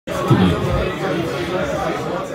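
Indistinct chatter of voices in a bar room.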